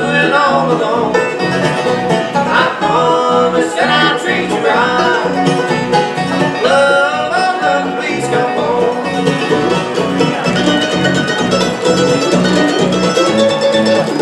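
Live acoustic bluegrass band playing an instrumental passage: rolling five-string banjo, mandolin and acoustic guitar over a steady upright-bass beat.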